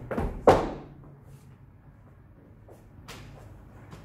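A dancer's shoe striking the wooden dance floor: one loud, sharp thump about half a second in, then a quiet room with a lighter knock about three seconds in.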